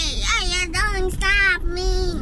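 A high voice singing long, wavering notes, with the steady low rumble of a car cabin underneath.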